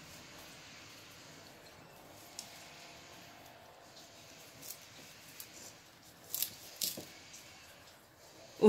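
A knife cutting through the fleshy, water-filled stem of a succulent: faint scattered crunching clicks, then a few crisp snaps about six and a half to seven seconds in as the top rosette comes free.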